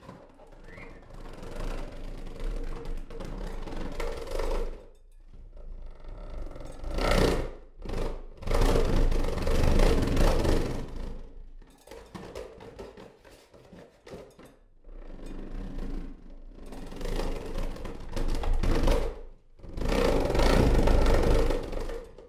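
Experimental electroacoustic ensemble music: a run of noisy swells with a deep rumble underneath, each one breaking off abruptly. The loudest swell comes near the end.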